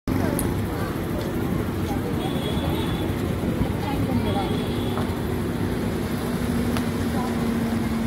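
Street traffic noise with a car engine running close by and people talking; a steady hum comes in about halfway through.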